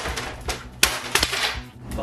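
A crash as a photo frame is knocked over and breaks: a run of sharp knocks and clatters, the loudest a little under a second in.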